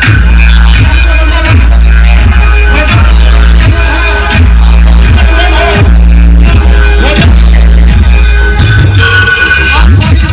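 Very loud electronic dance music with a heavy, pulsing bass beat, blaring from large street loudspeaker stacks.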